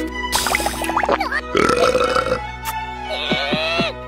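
A cartoon character's long, rasping belch about a second and a half in, over steady background music. Squeaky, gliding cartoon vocal sounds follow near the end.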